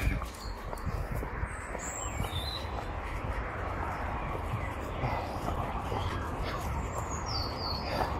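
Wild birds chirping a few times, short high calls about two seconds in and again near the end, over a steady low rumble on the microphone.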